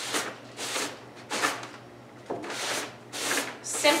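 A car-wash sponge rubbed back and forth over crumpled brown paper that is wet with paint and glaze, wiping the glaze off the raised creases: a run of short rubbing swishes, roughly one every two-thirds of a second.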